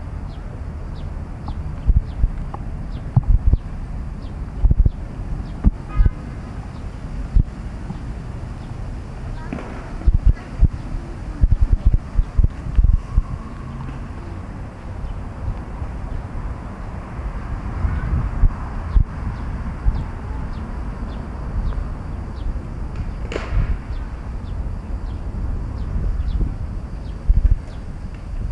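Wind rumbling on the microphone of a hand-carried camera during a walk, broken by irregular sharp thumps, with faint voices in the background.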